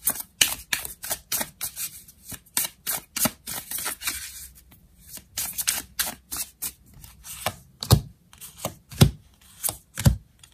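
A deck of tarot cards being shuffled and handled by hand: a quick run of light card clicks and flicks, with a few heavier taps about eight and nine seconds in as cards are laid down on the table.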